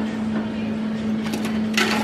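A steady low electrical-sounding hum over a background hiss, with a few short crackling hisses near the end.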